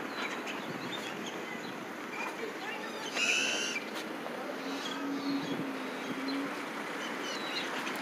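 Street ambience: a steady wash of traffic and outdoor noise. A short high chirp comes about three seconds in, and a low steady tone is held for a second or two past the middle.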